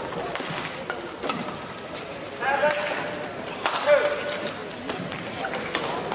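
Badminton rally: rackets striking the shuttlecock in sharp hits roughly a second apart, with a few short voices in the hall around the middle.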